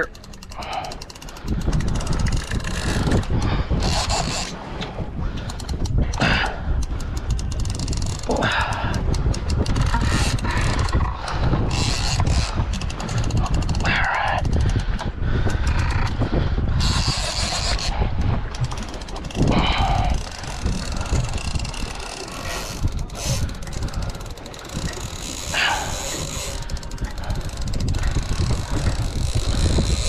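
Wind rumbling on the microphone on an open boat, with intermittent mechanical clicks and whirs from a heavy fishing reel as line is worked against a hooked shark.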